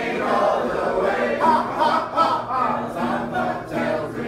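A group of people singing together in chorus.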